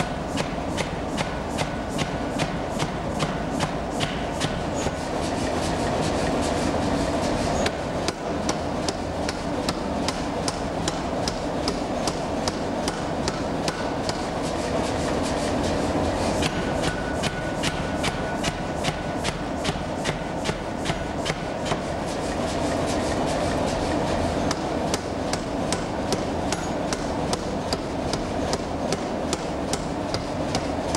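Forging power hammer striking a red-hot steel knife blank on the anvil in a fast, steady rhythm of several blows a second, over the constant din of the running machine. The rhythm breaks briefly about eight seconds in and again near the middle, as the workpiece is moved.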